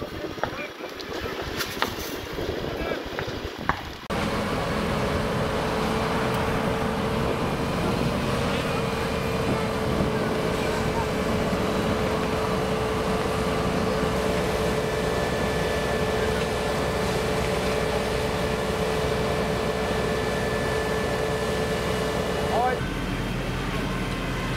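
Wind buffeting the microphone at first. After a cut about four seconds in comes a steady engine drone with a held mid-pitched whine, typical of a fire engine running its water pump to supply the hoses. The drone stops suddenly near the end.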